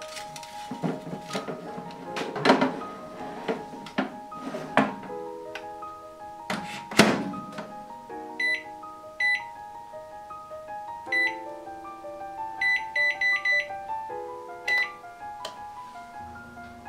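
Toshiba combination microwave oven being loaded and set: the metal baking tray and pan knock and clatter, with a loud knock about seven seconds in as the door shuts, then the keypad beeps as the time is set, a few single beeps followed by a quick run of about five. Background music plays throughout.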